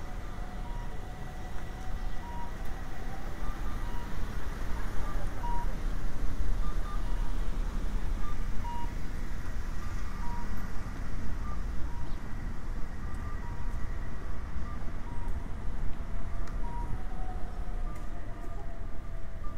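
Street traffic rumble with cars passing, and a pedestrian crossing signal sounding short electronic beeps in a steady rhythm, a little faster than once a second.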